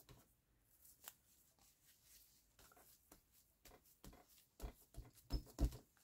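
Mostly quiet room with faint handling noises of paper and card: a soft click about a second in and a few soft low knocks near the end.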